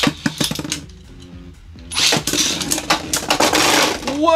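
Beyblade Burst spinning tops launched into a plastic stadium: a sharp rip and clatter as they land, a quieter stretch of spinning, then about two seconds in a loud burst of clashing and scraping as they collide and one is knocked out of the arena.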